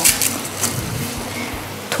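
Vegetable broth coming to a light boil in a steel kadai, a steady hiss, as dry Maggi noodle cakes are broken by hand and dropped in, with a few faint crackles of the noodles near the start and just before the end.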